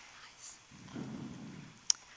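Faint, low murmur of voices with no clear words, then a single sharp knock near the end from the lectern microphone being handled.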